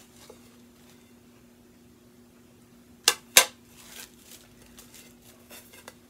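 Ceramic dinner plates being handled, clinking together twice in quick succession about three seconds in, followed by a few faint light knocks.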